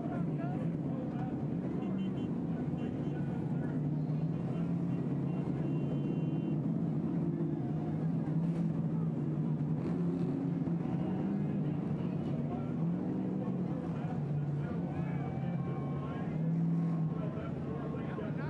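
Vehicle engines idling steadily, a low drone that wavers slightly in pitch, with indistinct voices behind it.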